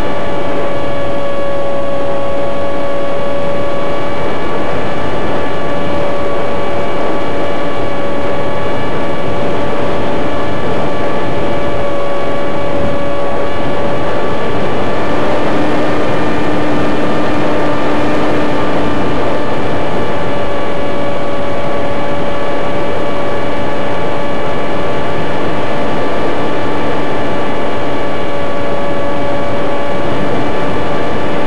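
Steady pitched drone of a small model aircraft's motor and propeller, heard loud and close from the camera carried on board, holding nearly the same pitch throughout with a slight shift in tone about halfway through.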